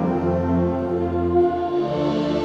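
High school concert band playing sustained chords of brass and woodwinds, moving to a new chord near the end.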